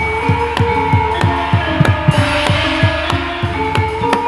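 Gamelan ensemble playing dance accompaniment: a drum beating steadily, about three strokes a second, each stroke dropping in pitch, over ringing metallophone tones.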